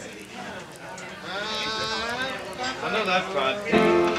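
A person's voice, wavering up and down in pitch, amid talk between musicians. Instrument notes start up near the end.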